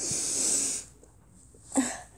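A child's loud sniff through the nose, one hissy intake lasting under a second, acting out a character smelling something bad.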